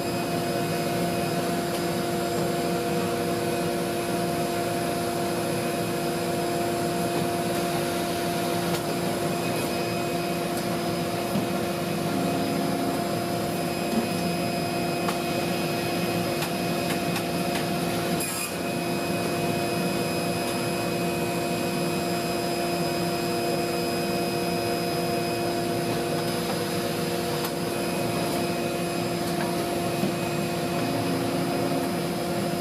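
Bourg BB3002 perfect binding line with CMT330 trimmer running in automatic mode: a steady drone of motors and blowers with constant hum tones. There is one brief click about eighteen seconds in.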